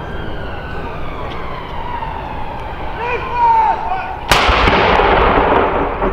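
A single blank round fired from a 105 mm L118 light gun during a royal gun salute. About four seconds in there is one sharp report, followed by a long rolling echo that dies away over a second or two.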